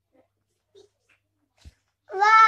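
Near silence: room tone with a few faint soft sounds and one short dull thump near the end.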